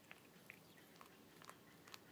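Faint chewing from a cat eating a chipmunk, its teeth working through the carcass's bones in soft clicks about every half second.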